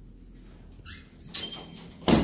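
A short high squeak about a second in, followed by a brief scuffing noise, the loudest sound.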